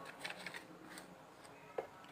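Faint rustling and light taps of a white cardboard phone box being picked up and moved aside by hand, with one short click near the end.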